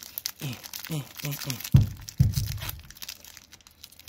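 Foil booster-pack wrapper of a Pokémon trading-card pack crinkling and tearing as it is pulled open and the cards are drawn out, with a few short hummed vocal sounds in the first second or so and two low bumps about halfway through.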